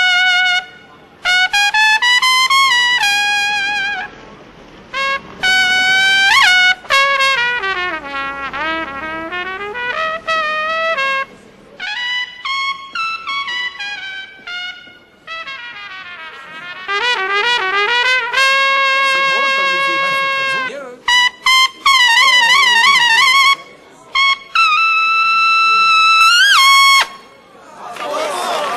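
Unaccompanied trumpet improvising jazz phrases: quick runs and bent notes broken by short rests, a long held note in the middle, and wide vibrato on high held notes near the end, finishing with an upward scoop into a last held note.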